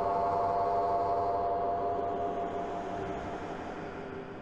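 Cinematic transition drone: a dense, sustained hum of many steady tones over a noisy wash, fading down through the second half.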